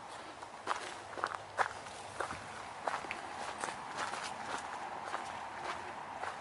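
Footsteps crunching on a gravel path scattered with fallen leaves, an uneven step about every half second to second.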